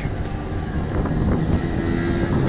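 A motor scooter's small engine running as it rides past close by, over the road noise of approaching car traffic.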